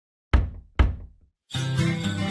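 Two loud knocks about half a second apart, each ringing out briefly, then music with guitar starts about one and a half seconds in.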